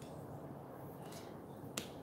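Quiet room tone with faint handling noise, and a single short sharp click near the end.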